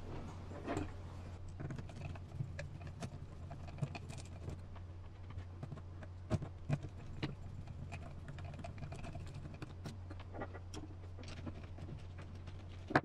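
Scattered light clicks and taps of a hand screwdriver and small metal and plastic RC truck parts being handled on a workbench, with a few sharper knocks between six and seven seconds in, over a steady low hum.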